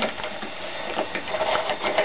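Camera handling noise: irregular rustling, rubbing and small clicks as the camcorder is handled with its lens covered.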